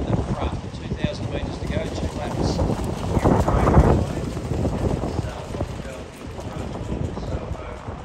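Wind rumbling on the microphone, irregular and low, with a louder gust about three to four seconds in.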